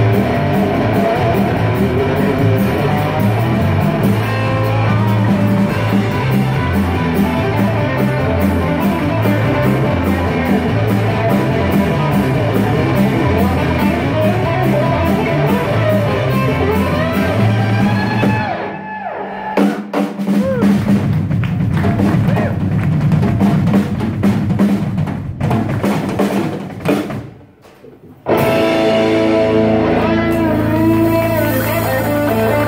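A live band playing loud amplified music: electric guitars over a drum kit keeping a steady beat, with some voice. The band sound thins out briefly about two-thirds of the way through, drops away almost entirely for about a second shortly before the end, then comes back at full level.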